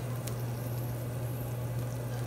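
Steady low hum under a faint even hiss, with one light tap about a quarter second in.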